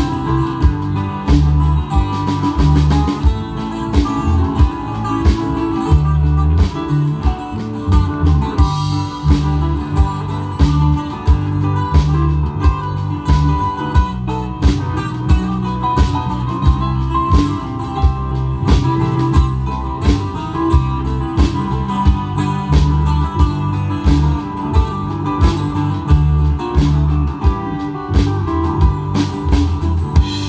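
Live rock band playing an instrumental passage: guitars over drum kit, bass and keyboards, with a steady drum beat and no singing.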